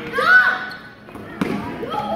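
A voice calls out at the start, then a basketball bounces once on the hardwood gym floor about a second and a half in.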